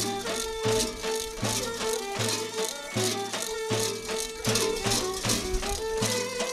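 Large metal bells worn by kukeri mummers, clanging in a steady rhythm about once every three quarters of a second, with several ringing pitches sounding between the strikes.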